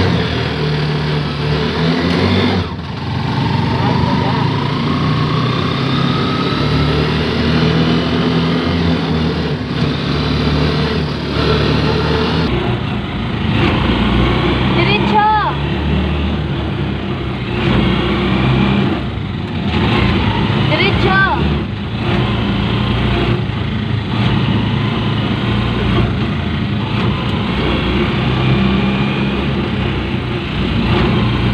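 Motorcycle engine of a motorcycle-and-sidecar tricycle running while under way, its pitch stepping up and down with throttle and gear changes, heard from inside the sidecar.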